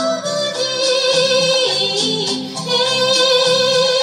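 1960s Bengali film song: a male singer holding long notes, with a few pitch jumps, over instrumental accompaniment.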